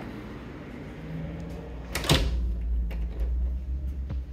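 A hinged French patio door being worked by hand: a single sharp knock about halfway through, followed by a low steady rumble and a faint click near the end.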